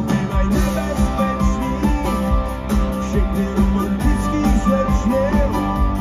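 Live rock band playing an instrumental passage with no vocals: guitars over bass and a steady drum beat.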